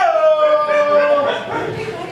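A man's voice letting out one long howl that slides slightly down in pitch and dies away after about a second and a half.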